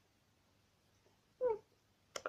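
One brief, high vocal sound whose pitch falls, about one and a half seconds in; otherwise near silence.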